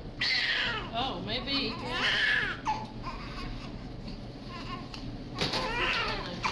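Newborn baby crying in high wails, three bouts with quieter gaps between.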